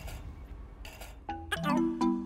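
A few light clicks, then about a second and a half in a run of short, chiming, pitched notes: a comic sound-effect sting played over a missed flick of a toy basketball.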